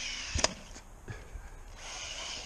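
A single sharp knock about half a second in, over a faint steady hiss.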